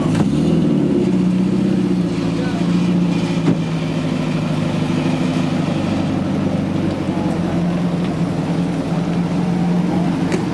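Engine of a large pre-war sedan running steadily at low revs as the car rolls slowly past, an even low drone.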